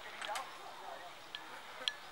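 Faint, distant voices of people talking, with a few light clicks, the sharpest near the end.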